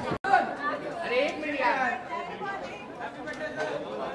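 Crowd chatter: many voices talking over one another, with a louder voice rising above the babble for a moment in the middle. The sound drops out completely for an instant just after the start.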